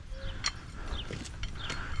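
A few irregular light clicks and ticks over a low outdoor rumble.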